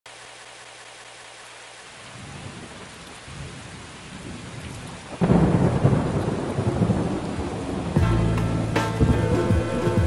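Steady rain with thunder, a low rumble building from about two seconds in, then a loud thunderclap just past halfway. About two seconds before the end a hip-hop beat with bass and drum hits comes in over the storm.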